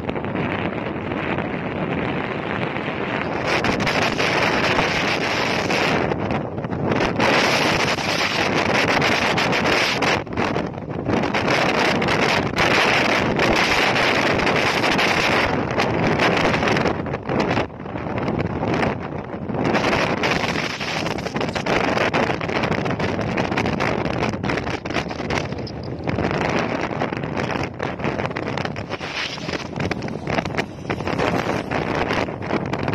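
Wind rushing over the microphone of a camera on a moving motorcycle, a steady roar of wind and road noise that swells and eases, loudest through the middle stretch.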